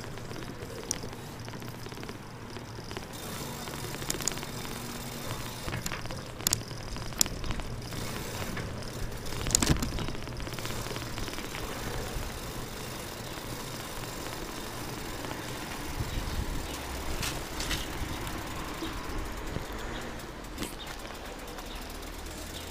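A bicycle being ridden over paving stones, heard from a handlebar-mounted camera: steady rolling and rattling noise with a few sharp knocks, the loudest about ten seconds in.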